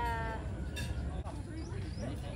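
A high voice draws out a falling syllable at the start, then fainter voices follow, over a steady low rumble of wind on the microphone.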